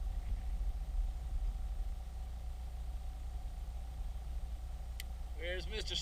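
Steady low rumble of wind buffeting the microphone, with a single faint click about five seconds in. A man says a word near the end.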